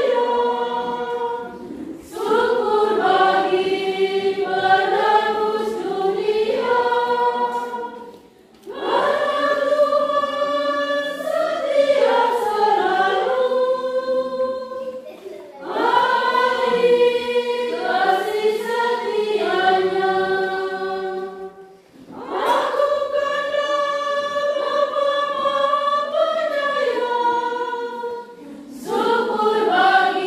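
A church choir of mostly women's voices singing a communion hymn without instruments, in long phrases of about six seconds with a short breath between each.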